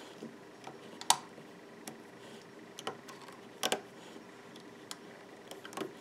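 Scattered light clicks of a metal loom hook and rubber bands against the plastic pegs of a clear loom as bands are pulled over, about five or six at irregular intervals, the loudest about a second in.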